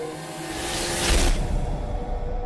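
Dramatic whoosh sound effect that swells for about a second and cuts off, giving way to a low rumble, under a held note of background music.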